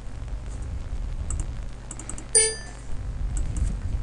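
Computer mouse clicks and key taps over a steady low hum, with one short pitched tone about two and a half seconds in, the loudest sound.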